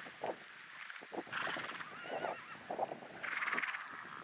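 A wild mustang whinnies once, a short wavering call about two seconds in, among rustling and soft thumps close to the microphone.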